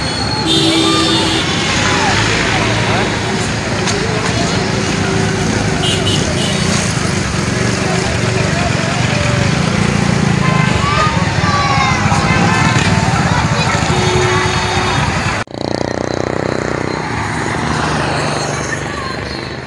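Rally convoy traffic passing on a highway: trucks and cars running by loudly and continuously, with people shouting and a few short horn blasts. The sound cuts off abruptly about three-quarters of the way through, then comes back a little quieter.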